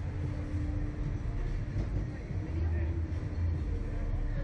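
A steady low rumble with a constant hum running through it.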